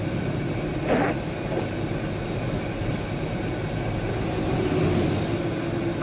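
Steady engine and tyre noise of a vehicle driving on a wet road, heard from inside the cabin. There is a short sound about a second in and a swell of hiss near the end.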